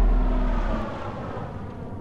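A sudden deep, low boom that fades over about a second into a quiet, steady low rumble.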